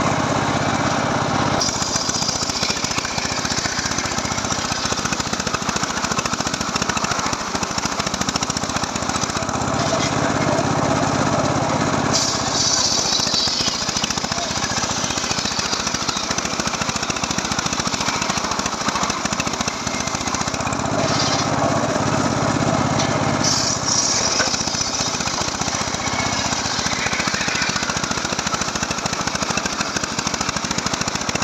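Large circular saw blade ripping lengthwise through a mahogany log, making a loud, continuous cutting noise that shifts in tone a few times as the cut goes on.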